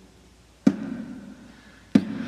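Two hand strikes on a small bongo drum, about a second and a quarter apart, each with a short low ring after it.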